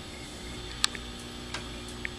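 A few sharp clicks, the loudest a little under a second in, as a hand sets the knobs of a Boss DD-3 Digital Delay pedal, over a faint steady hum.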